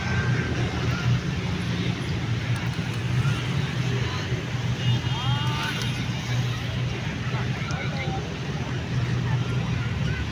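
Busy street ambience: a steady low rumble of road traffic with the babble of people's voices, and occasional short chirps, including a brief cluster of pitched calls about halfway through.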